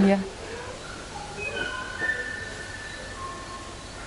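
Tropical birds singing: a string of clear whistled notes at different pitches, some held for about a second.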